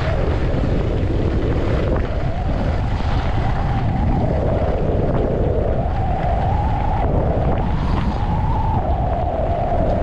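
Wind buffeting the microphone of a camera on a skier moving downhill, with the scrape and hiss of skis on groomed snow swelling and fading with each turn.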